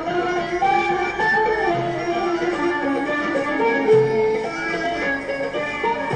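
Arabic instrumental ensemble music: accordion and plucked qanun playing a melody in unison, over low darbuka strokes about every two seconds.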